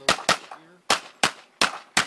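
Rapid pistol shots from a Kimber 1911 in .45, about six in two seconds. Among them is a double: the pistol fires twice on one trigger pull, going full auto. The owner suspects the gun, with about 80,000 rounds through it, might just be a bit worn out.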